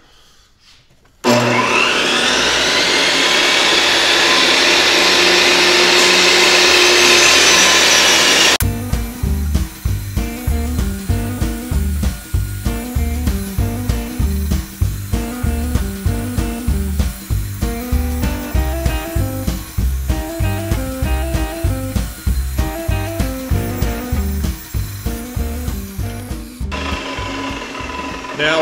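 A table saw is switched on about a second in, and its motor whine rises in pitch and then settles to a steady run. After about seven more seconds the sound cuts to music with a steady beat, which runs until shortly before the end.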